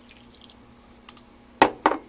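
Hot water trickling faintly from a glass measuring cup into a ceramic baking dish. Near the end come two sharp knocks about a quarter second apart.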